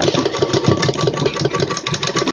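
Straight-stitch sewing machine running steadily at speed, the needle clattering in a rapid even rhythm as it stitches a seam through the fabric.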